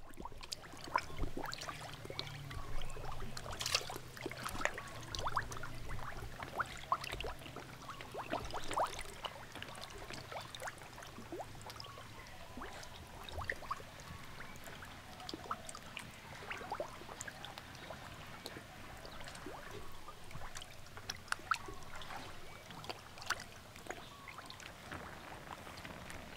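Bubbling, gurgling water with many small bubble pops and drips, over a low hum that fades out about halfway through.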